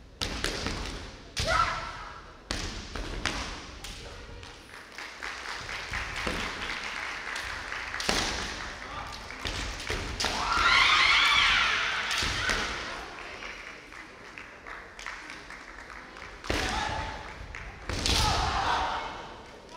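Kendo bout: sharp knocks of bamboo shinai strikes and stamping footwork on the wooden floor, with the fencers' kiai shouts. The loudest is a long drawn-out shout about ten seconds in, and further short shouts come with the strikes near the start and at the very end.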